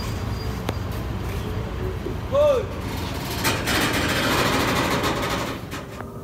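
Low steady rumble of vehicle or engine noise. A short voiced sound rises and falls in pitch about two and a half seconds in. From about three and a half seconds a rush of noise swells and then fades near the end.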